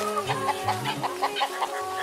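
A rooster clucking in short, quick notes over steady background music.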